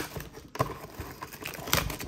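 Crinkling and rustling packaging with a few sharp clicks as a sealed trading card box is opened.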